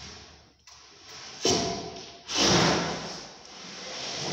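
Rough scraping and sliding noises in two swells, the first starting sharply with a short creak about a second and a half in, the second louder.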